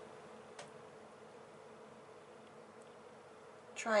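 Faint steady background hum with a thin held tone, and a single small click about half a second in. A woman's voice starts right at the end.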